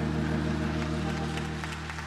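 Church organ holding a soft, steady chord, the closing chord of a hymn.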